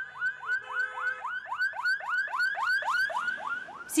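Emergency vehicle siren on a fast yelp, a quick run of rising whoops about four a second.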